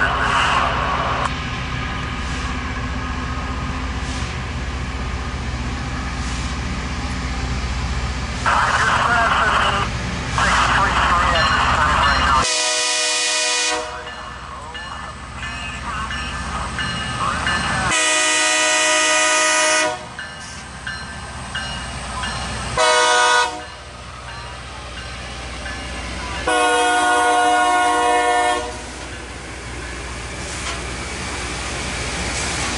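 Loram rail grinder's locomotive horn sounding the grade-crossing signal, two long blasts, a short one and a long one, over the steady low rumble of the approaching train's diesel engines.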